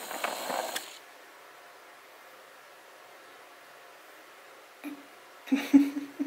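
Mostly quiet room tone, with a short rustle at the start and a few brief, low, steady-pitched vocal sounds near the end.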